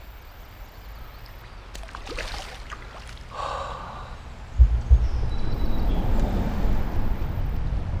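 River water splashing and sloshing at the surface as a hooked brown trout is worked toward a landing net. About halfway through, heavy low rumbling and a couple of knocks on the microphone come in and stay to the end.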